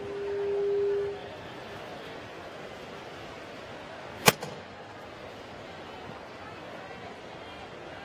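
A steady electronic tone about a second long, then about three seconds later a single sharp crack as a model car's CO2 canister is fired and the car launches down the track.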